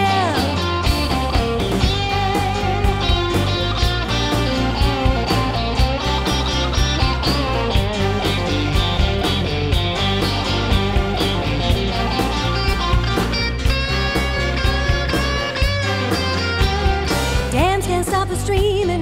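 Instrumental break of an upbeat band song: fiddle and keyboard over a bass line and drums with a steady beat.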